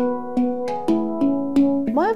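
Handpan played with the hands: a quick run of ringing steel notes, about three or four a second, each one sustaining and overlapping the next.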